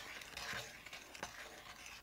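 Faint sizzle of a pomegranate-juice and vinegar sauce with shallots in a hot nonstick skillet, fading toward the end.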